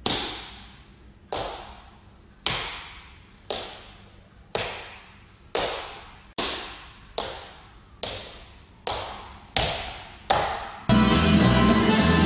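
Leather-soled dress shoes stepping on a wooden floor in a lezginka footwork drill: about a dozen sharp heel and sole knocks, each ringing briefly in the room, coming roughly once a second and quickening toward the end. Music starts about eleven seconds in.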